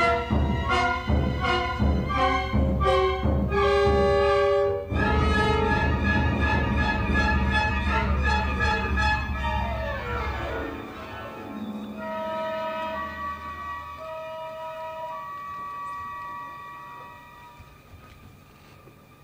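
Orchestra playing classical ballet music: loud, rhythmic full chords for about five seconds, then sustained strings and woodwinds that thin out to a few soft held notes and fade away near the end.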